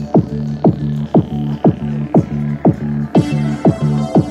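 Yamaha PSR-E443 keyboard playing an electronic dance rhythm through its own speakers: a kick drum about twice a second over steady bass notes, with hi-hats joining about three seconds in.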